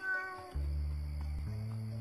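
A cat's short meow, then low sustained notes of the film score that change pitch about halfway through.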